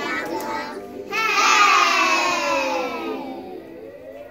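A group of young children's voices over a recorded song. About a second in, a loud voice sound slides steadily down in pitch for about two seconds and fades away.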